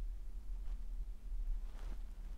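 Quiet room with a low steady hum, and two faint brief scrapes about a second apart.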